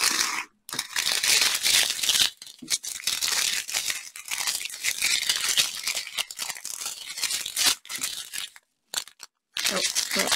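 Small clear plastic bags of diamond-painting drills crinkling and rustling as they are handled and sorted, with the tiny drills shifting inside. There are short pauses near the start and near the end.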